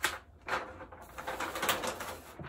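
A large sheet of paper being peeled back off a poster board, rustling and crinkling in several bursts.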